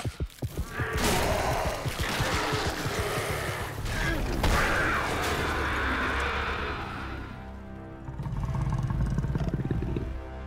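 Film soundtrack music over battle sound effects. The music comes in suddenly about a second in, and a low rumble swells near the end.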